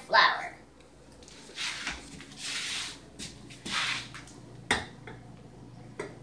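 Ingredients poured from a plastic measuring cup into a stand mixer's metal bowl: three short hissing pours, then a sharp knock about three-quarters of the way through.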